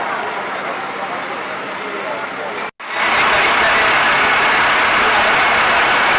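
A fire engine's motor running amid the voices of a crowd of onlookers, in short clips with an abrupt cut about three seconds in; after the cut the noise is louder and steadier.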